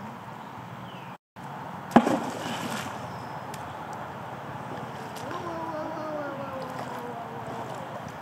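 Steady outdoor background hiss by a shallow river, broken by a sharp knock about two seconds in. From about five seconds, a person's drawn-out voice slowly falls in pitch.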